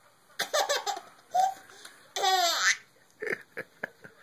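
Baby laughing in bursts: a run of quick laughs about half a second in, then a long high-pitched squealing laugh a little past two seconds, with short laughs near the end.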